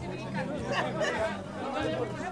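Several people talking over one another at once: general chatter, with no one voice standing out.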